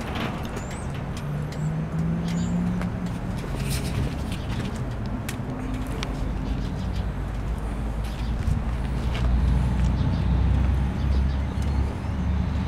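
2011 Harley-Davidson Dyna Super Glide Custom's Twin Cam 96 V-twin idling steadily through Vance & Hines Short Shots exhaust, a low steady rumble that grows a little louder in the second half.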